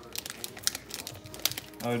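Irregular crinkling and small sharp clicks from a Skittles candy packet being handled as the candies are picked out by colour.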